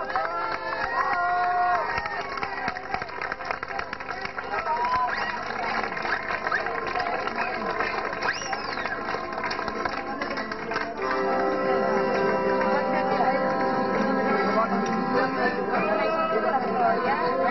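Accordion playing in a crowd, with people's voices over it. About eleven seconds in it grows louder, holding steady chords.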